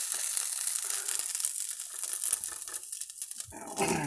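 Crinkling of plastic packaging being handled, a crackly rustle that is busiest in the first couple of seconds and thins out toward the end.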